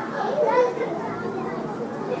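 Many children's voices talking and calling out over one another in a continuous hubbub, with one voice rising above the rest about half a second in.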